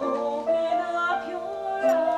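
A woman singing live over instrumental accompaniment, her voice coming in strongly at the start with held notes and a sliding note near the end.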